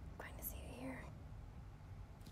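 Faint whispered words from a person, ending about a second in.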